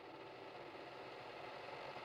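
Faint whirring of a small machine, slowly growing louder.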